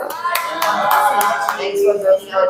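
A small group clapping their hands, with one voice holding a long call over the first part of the clapping.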